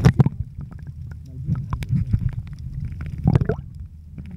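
Muffled underwater sound picked up by a camera microphone submerged in the sea: a low rumble with scattered clicks and gurgles. There is a sharp splashy cluster as it goes under at the start and a louder gurgling surge about three seconds in.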